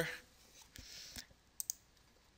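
Two quick, sharp clicks close together about one and a half seconds in, from a computer being operated with mouse and keyboard.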